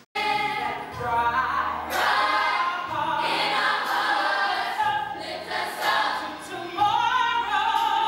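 A musical-theatre cast singing a show tune together with band accompaniment. It starts abruptly after a brief silent gap at the very start.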